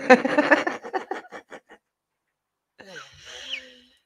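A woman laughing: a quick run of laughs that fades out over about two seconds. After a pause, near the end, a short quiet sigh.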